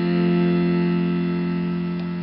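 Casio electronic keyboard holding the song's final F chord: one sustained chord that fades slowly.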